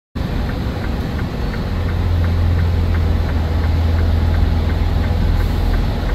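Truck's diesel engine running, heard from inside the cab: a steady low drone that grows a little stronger after about two seconds. A light regular ticking runs through it, about three ticks a second.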